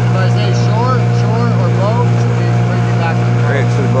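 Small motorboat's engine running steadily underway, a constant low hum. Several short rising-and-falling vocal calls sound over it in the first half and again near the end.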